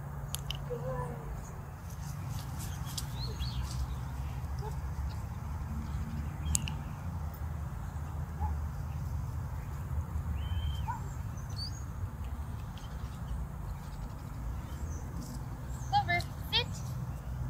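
Outdoor background: a steady low rumble with occasional faint bird chirps and a few light clicks.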